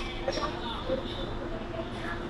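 Inside a Hong Kong MTR subway carriage: the train's steady running noise with a faint steady hum, under quiet passenger chatter.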